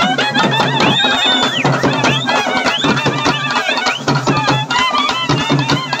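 Live Tamil folk music for karagattam dance: barrel drums (thavil) beat a fast, dense rhythm under a shrill reed melody of bending, swooping notes, one note held briefly about a second in.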